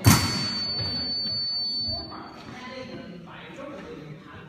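A sharp knock as a fencing lunge lands. It is followed at once by the electric scoring machine's steady high beep, held for about two seconds, signalling that an épée touch has registered.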